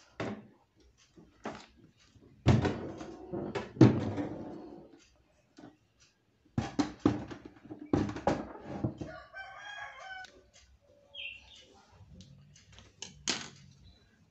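Knocks and thumps of a refrigerator door being handled after being lifted off its hinges, the two loudest a few seconds in. A rooster crows in the background about two-thirds of the way through.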